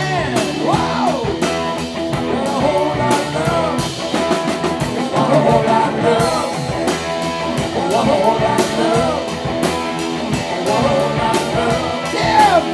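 Live rock band playing: two electric guitars, electric bass and a drum kit driving a steady beat, with sung vocals over it.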